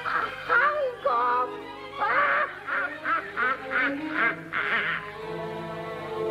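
An old witch's shrill cackling laugh over orchestral music, breaking into a quick run of cackles about two seconds in. The laughter stops near the end, leaving the music alone.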